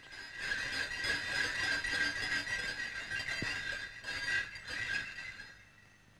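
Bullock carts galloping along a dirt road, heard on an old film soundtrack: a steady jingling, squealing clatter that fades away in the last second or so.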